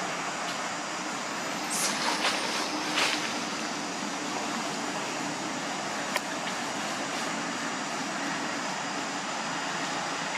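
Steady outdoor background noise with a faint low hum throughout. Brief rustling bursts come about two and three seconds in, and a single sharp click about six seconds in.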